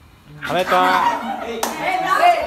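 Several boys' voices calling out, with a single sharp hand clap about a second and a half in.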